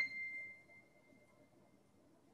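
A single high note, C7, played back by Sibelius notation software as the note is selected in the score. It starts sharply, rings as one thin pure tone and fades away over about two seconds.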